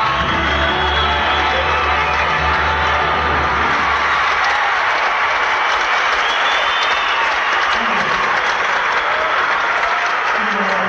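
Concert audience applauding and cheering over a live band's music. The band's bass and chords drop away about four seconds in, leaving mostly applause with faint instrument notes.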